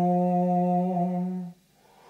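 Overtone singing: a man's low, steady sung drone with a bright whistling overtone held above it, the overtone shifting slightly about a second in. The note breaks off about one and a half seconds in.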